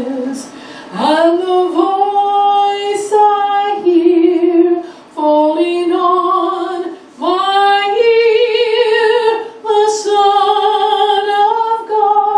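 A woman singing a hymn solo into a microphone, in long held phrases with vibrato and short breaths between them.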